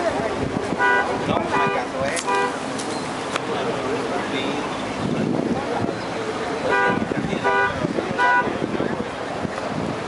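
A vehicle horn giving three short beeps a little over half a second apart, then another three short beeps about six seconds later, over a crowd's chatter.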